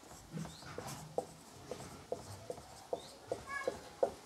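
Dry-erase marker writing digits on a whiteboard: a string of small taps, about two to three a second, one per stroke, with a few short squeaks of the tip on the board.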